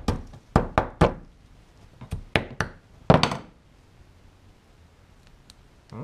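Small hammer chipping at ice frozen around a flashlight. Two quick groups of three sharp knocks come in the first few seconds, then a heavier crack a little after three seconds. A few faint ticks follow near the end.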